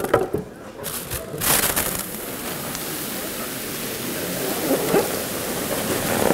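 Liquid nitrogen boiling with a steady hiss as a room-temperature rubber balloon is pushed down into the bucket, the warm balloon making it boil while the air inside is cooled. A couple of knocks at the start.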